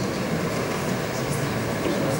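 A steady, even rushing noise with a low rumble and no distinct events.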